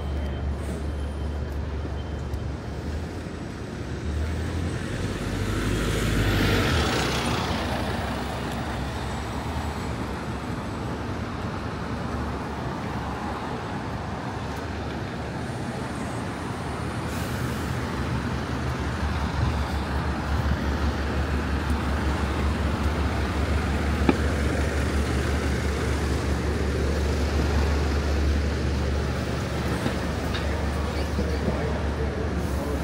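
Steady city road traffic with a low rumble of passing cars and buses; one vehicle passes close by, loudest about six or seven seconds in.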